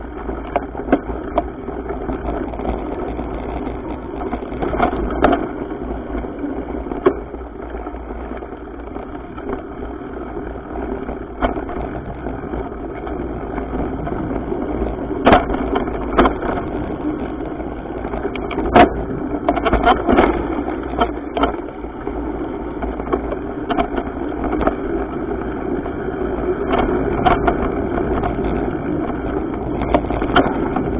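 Mountain bike riding fast down dirt singletrack, heard from a camera on the bike: a steady rumble of wind on the microphone and tyres on dirt. Sharp rattles and clunks come from the bike over bumps, the loudest about 15 and 19 seconds in.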